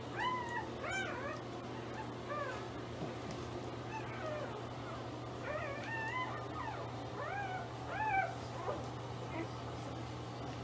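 Four-day-old pit bull puppies squeaking and mewing while nursing: short, high cries that rise and fall, coming every second or two, the loudest near the end. A steady low hum runs underneath.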